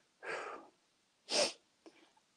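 A man's breathing: a soft breath out, then about a second later a short, sharper intake of breath.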